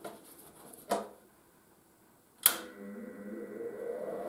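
A click, then a gap of dead silence, then a sharp switch click about two and a half seconds in as the Parkside PFDS 120 A2 flux-cored wire welder is turned on, followed by its steady hum.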